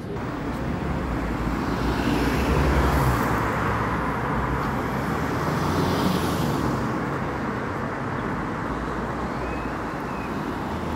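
Road traffic on a city street, with vehicles passing close by: the noise swells about two to three seconds in and again about six seconds in, the second time as a van drives past.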